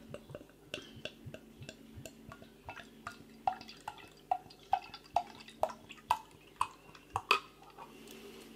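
Golden ale glugging out of a 500 ml glass bottle as it is poured into a pint glass: a steady run of gurgles over the pour. The gurgles come quick and soft at first, then slower and louder, about two a second, from about halfway.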